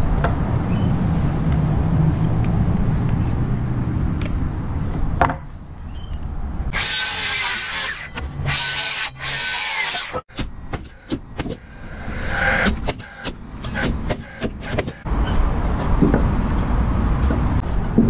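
Cordless circular saw ripping a 2x4 lengthwise in three short runs of about a second each, some seven seconds in. Then a spell of sharp wooden knocks and clatter as the cut pieces are handled.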